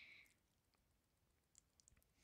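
Near silence: room tone, with a few faint small clicks near the end.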